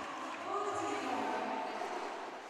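Crowd noise in a sports hall, with a faint drawn-out shout from the crowd starting about half a second in.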